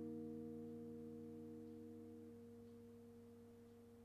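Final chord on an electric guitar ringing out and slowly fading away, some of its higher notes dying out first and leaving a couple of low notes sounding faintly.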